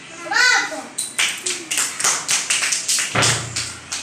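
A child's voice calls out briefly, then children clap in a quick even rhythm, about five claps a second, for roughly three seconds.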